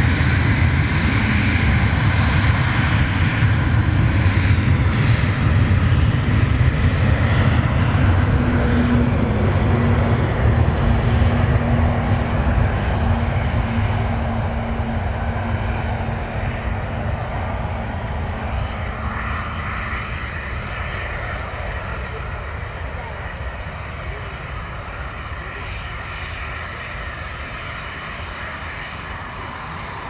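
Twin-turbofan regional jet, an Embraer E-Jet with GE CF34 engines, at takeoff power on its takeoff roll: loud and steady, with a rising whine in the first couple of seconds. The engine noise fades from about halfway through as the jet lifts off and climbs away.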